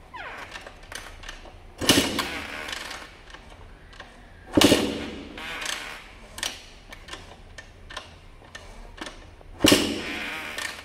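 Two-stroke dirt bike being kick-started: three hard kicks, about a second in, about four and a half seconds in and near the end, each a loud clunk followed by about a second of the engine turning over. It doesn't catch and run in between.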